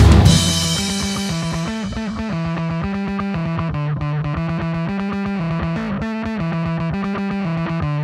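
Post-punk song: the loud full band drops away at the start, leaving an electric guitar with effects picking a steady, repeating riff of quick notes.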